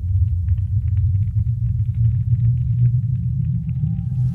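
Deep, steady low rumbling drone of soundtrack sound design, with faint scattered ticks above it.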